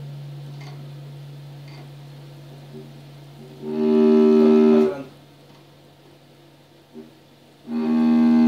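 Cello bowed by a beginner, playing single notes. A low note rings and fades over the first few seconds. A louder bowed note sounds for about a second around the middle, and another bowed note begins near the end.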